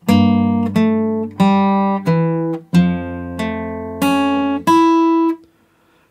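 Acoustic guitar playing a slow fingerpicked phrase, about eight single notes plucked one after another and left ringing over a sustained low bass note. The last note fades out near the end.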